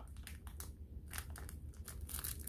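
Faint, irregular crinkling of the clear plastic wrap around a wax melt clamshell as it is handled.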